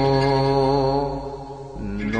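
Male voice chanting a Coptic Orthodox hymn, holding one long note that fades out about a second and a half in, with a new, lower note beginning just before the end.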